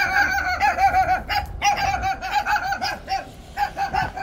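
Chickens clucking in a fast, continuous run of short calls that softens near the end.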